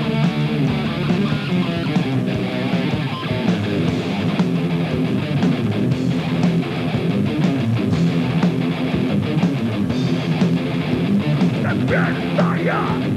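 Heavy metal band playing an instrumental passage: electric guitars riffing over a drum kit, with no singing.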